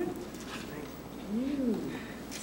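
A single soft vocal 'ooh' that rises and then falls in pitch, about one and a half seconds in, with faint murmured talk before it.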